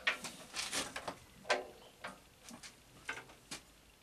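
A dozen or so irregular metallic clicks and clunks from hands working the controls and parts of a round column mill drill.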